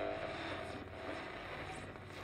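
Faint, low, steady ambient drone: a dark soundscape bed with a low rumble and no clear beat.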